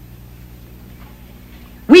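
A pause holding only a low steady hum, then a woman's voice starts a line of verse right at the end.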